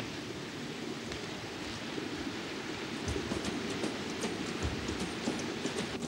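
Steady low rumbling background ambience with no voices, with faint light ticks scattered through the second half.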